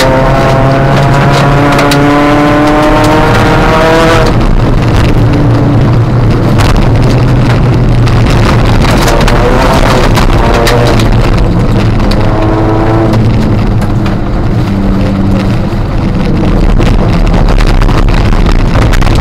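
Inside the cabin, a Ford Fiesta ST150 rally car's 2.0-litre four-cylinder engine pulls hard, rising in pitch and breaking off about four seconds in and again near thirteen seconds as the driver shifts or lifts. Gravel and water noise from the tyres runs underneath, with sharp clicks of stones hitting the car.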